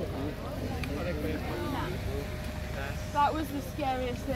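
Several people talking at once over a low, steady rumble, with one louder voice a little after three seconds.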